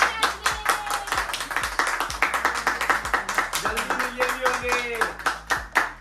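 Several people clapping their hands steadily together, with voices over the clapping.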